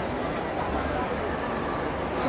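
Hubbub of a dense crowd, many voices talking at once.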